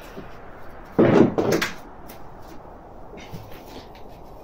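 A short creaking knock lasting about half a second, about a second in, followed by a few faint taps.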